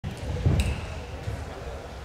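A dull thump with a sharp click about half a second in, over a low rumble.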